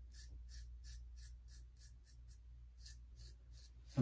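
Merkur Futur double-edge safety razor scraping through lathered stubble in short, faint strokes, about three a second, on a pass against the grain.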